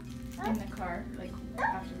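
Short high-pitched yelping calls that glide up and down, in two bursts about a second apart, over faint background music.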